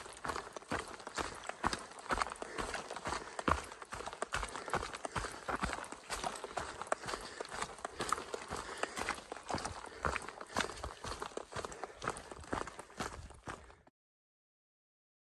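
A hiker's footsteps on a dirt trail covered in dry dead leaves, a quick, uneven run of crunching steps at walking pace, which cuts off abruptly near the end.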